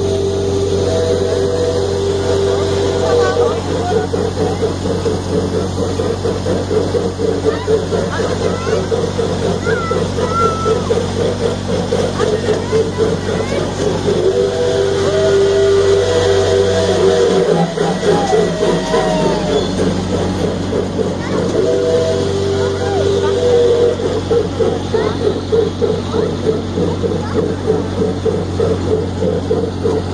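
Pickie Puffer miniature train running, heard from on board: a steady low hum with a fast, even rhythmic clatter, and a few held tones on and off.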